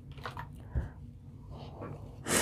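Faint handling sounds as the paper backing of Heat n Bond Ultra Hold fusible web is peeled off fabric, with one soft thump a little under a second in.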